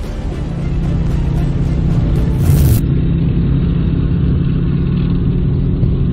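Military vehicle engine running with a steady low drone, revving briefly about two and a half seconds in.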